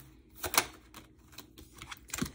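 Tarot cards being handled on a table: one short card slap or slide about half a second in, then small clicks and rustling of cards near the end.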